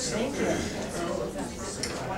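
Indistinct overlapping conversation among several people in a meeting room, with a light clink of a handled object near the end.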